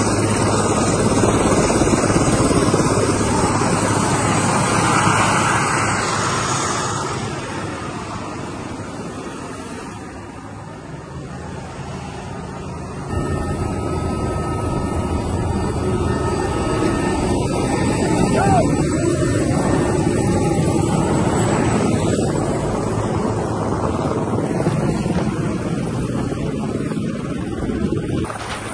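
Military helicopter running, its turbine engines and rotor making a loud steady noise over a low hum. The level fades down toward about ten seconds in, then jumps back up suddenly about three seconds later as the shot changes to aircraft cabin noise.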